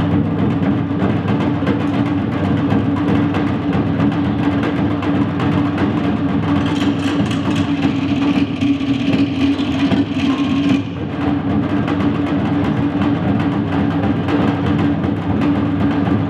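Fast Polynesian drum music: dense, rapid drumming in a steady driving rhythm, with a brief dip in loudness about eleven seconds in.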